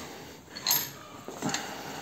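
Hand cable winch being carried and handled, its metal parts clinking: one sharp clink about halfway through and a fainter one shortly after.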